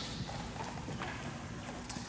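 A few faint, irregular light taps and clicks over quiet room tone: handling noise from a handheld microphone and papers on a lectern.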